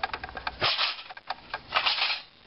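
Rubbing and scraping handling noises with scattered clicks, coming in two short bursts.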